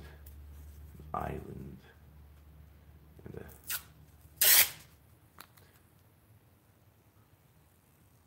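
Tape being pulled and torn from its roll in short rips, the loudest a sharp ripping noise about halfway through.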